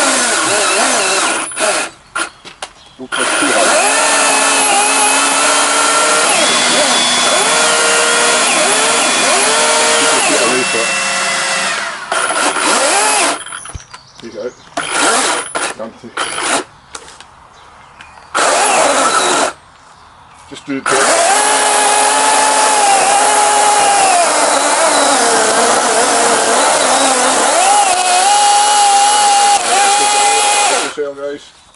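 A chainsaw cutting through a thick tree branch, its motor whine dipping and shifting in pitch as the chain bites. It stops and restarts several times between bursts of cutting.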